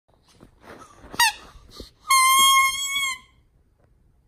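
Squeaker in a plush bat toy squeaking as a dog bites it. A short squeak comes about a second in, then one longer, steady squeak of about a second, with soft rustling around them.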